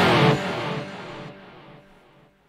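The last chord of a rock song on electric guitar with backing: the full band sound stops short and the chord rings on, fading away over about a second and a half.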